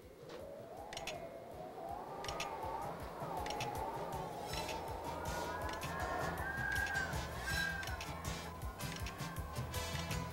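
Wind howling in a rising, wavering pitch over a low rumble, building as the gust strengthens past 100 mph. Clicks from the wind-speed recorder come faster and faster through it.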